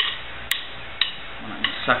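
Wooden drumsticks clicked together, four sharp clicks about half a second apart.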